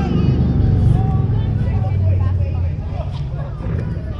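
Indistinct voices over a loud low rumble that eases off over the last couple of seconds.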